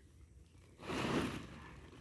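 A forkful of chopped silage is tipped from a pitchfork into a sack: one short rustling rush about a second in, after a near-quiet start.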